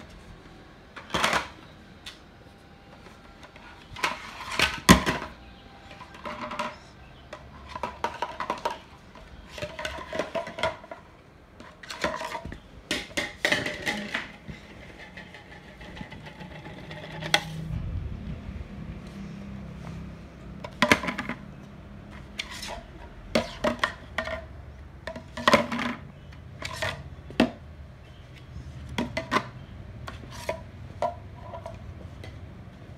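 Hollow plastic stacking rings clacking against each other and against the toy's cone and base in irregular knocks, some louder clatters among them. A low rumble of handling noise sets in about halfway through.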